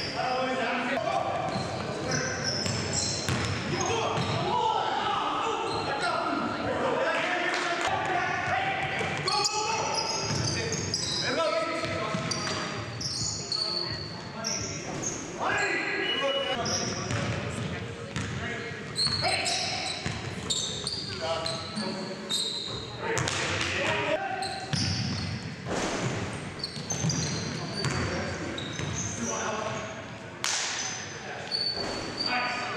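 Game sound of indoor basketball: the ball bouncing on the hardwood floor and players' voices calling out, echoing around the gymnasium.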